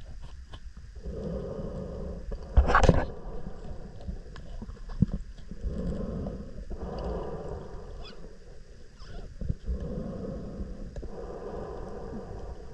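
A diver's slow breathing on a closed-circuit rebreather, heard underwater as a muffled low breath every four seconds or so. A short loud burst of noise comes about three seconds in, along with a few faint clicks.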